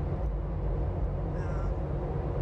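Steady low rumble of road and engine noise inside a car's cabin, with one brief high squeak about one and a half seconds in.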